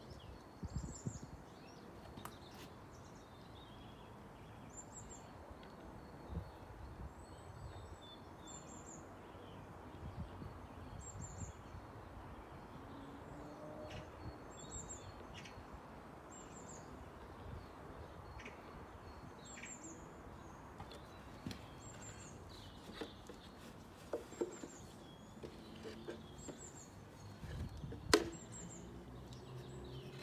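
A small songbird repeating a short, high chirp every second or two over faint steady outdoor background noise. A few light knocks from work on a wooden bird box come through, the sharpest near the end.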